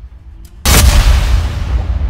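A sudden loud cinematic boom about half a second in, a trailer impact hit with a deep rumble that rings on after it.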